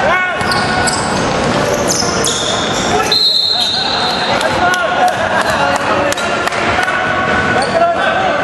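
Basketball bouncing on a hardwood gym floor amid players' voices. About three seconds in, a referee's whistle gives a loud blast lasting about a second to stop play for a foul.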